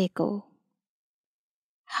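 A woman's narrating voice says one short Hindi word, then dead silence for about a second and a half until she starts speaking again at the very end.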